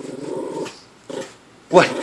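Small dog growling in play, a low rumble of under a second followed by a shorter one a little later.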